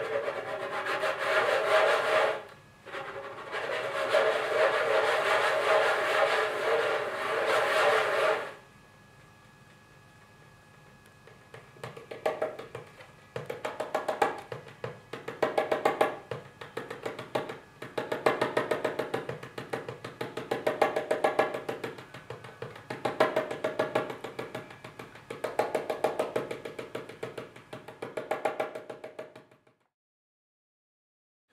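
A hand drum played with the hands: a dense roll of rapid strokes for about eight seconds, a few seconds' pause, then short rhythmic phrases of quick strokes with brief gaps between them.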